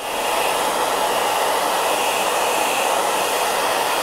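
Electric hair dryer blowing steadily, an even rush of air, as it dries the freshly wetted latex palm of a goalkeeper glove.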